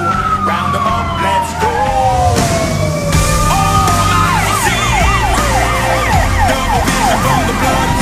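Fire engine sirens on a passing response: a siren winds down in one long falling wail over about three seconds, then a fast, repeated yelp starts about halfway in. A low steady drone runs underneath.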